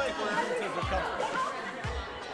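Many people talking at once in a large hall: the overlapping chatter of a congregation mingling. A low musical beat thumps about once a second underneath.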